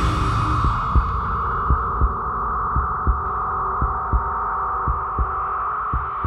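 Suspense sound design: a slow heartbeat-like double thump about once a second over a steady sustained drone.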